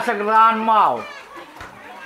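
A person's voice calling out in drawn-out, sing-song phrases, the last one falling away about a second in, with crowd chatter behind.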